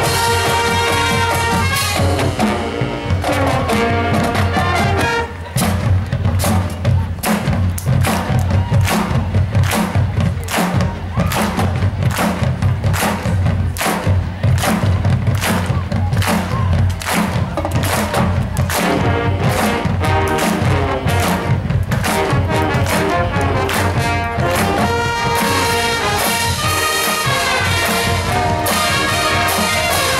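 Marching band playing a rock arrangement live, with held brass chords over drums. From about five seconds in until about twenty-five seconds, the drums take over with heavy, regular hits, and then the brass chords come back.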